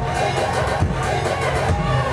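Live electronic music with a heavy bass beat, played from a laptop and keyboard controller.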